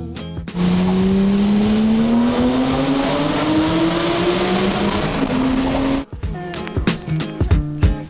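Car engine accelerating hard through a tunnel, its note rising steadily for about five seconds, then cut off suddenly by music.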